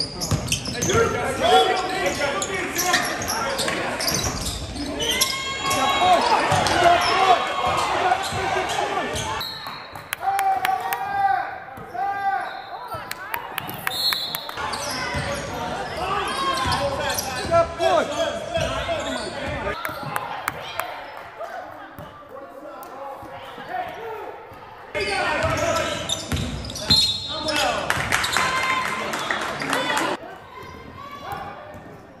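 Basketball game sounds in a school gym: a ball bouncing on the hardwood court among echoing, indistinct voices of players and spectators. The sound changes abruptly a few times as clips from different games are spliced together.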